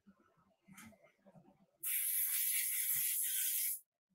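Sandblast cabinet blast gun firing a burst of compressed air, a steady hiss that starts a little before halfway, lasts about two seconds and cuts off suddenly.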